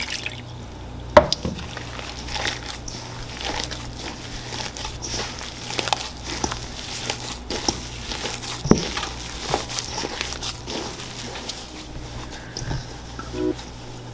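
Hands squishing and kneading wet corn masa dough in a stainless steel bowl as warm water is worked into the masa harina: irregular soft wet squelches and pats, with a sharper tap about a second in and another near nine seconds.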